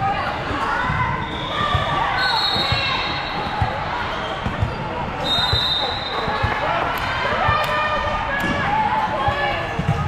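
Volleyball play in a large, echoing gym: many players and spectators calling out, a few sharp volleyball hits near the end, and two high whistle blasts, a fainter one about two seconds in and a louder one about five seconds in.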